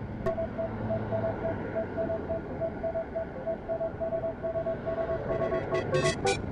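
Wind and road noise on a bicycle-mounted camera while riding, with a faint tone repeating about three or four times a second. Music starts again near the end.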